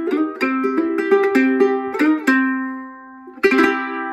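National steel ukulele in C tuning played with a slide: a quick picked repeating riff, then a held note fading out a couple of seconds in, and a short slide up into a final chord left ringing near the end.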